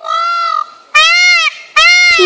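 Male Indian peafowl (peacock) giving three loud calls of about half a second each, every call rising then falling in pitch; the third starts near the end.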